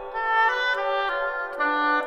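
Oboe playing a series of short notes that change pitch about every quarter to half second, with sharp attacks, within a contemporary piece for oboe and electronics.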